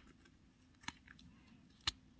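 Tweezers ticking against a sticker sheet while picking at a sticker: two short sharp clicks about a second apart, the second louder.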